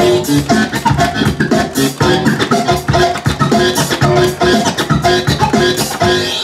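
Music played from a DJ's vinyl turntables through a mixer: a track with a steady beat, with the record worked by hand in short scratches.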